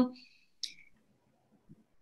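A woman's voice trailing off, then a single short click a little over half a second later, followed by near silence.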